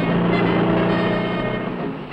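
Cartoon sound effect of a loud, rushing, motor-like whir for the frenzied building of an oil derrick. It holds steady for about a second and a half, then fades, with the orchestral score faintly beneath.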